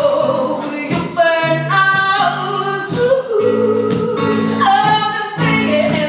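A woman singing to her own acoustic guitar, with long held notes over the chords.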